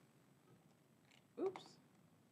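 A single short voice-like call about one and a half seconds in, its pitch rising and then falling.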